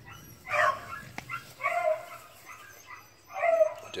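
A hound gives three short barks spread over a few seconds, the cry of a young hound running a rabbit on scent.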